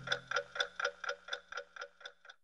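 Clock ticking, about four ticks a second, growing fainter and stopping near the end.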